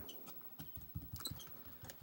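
Faint, scattered small clicks and ticks close to the microphone, several a second, with no speech.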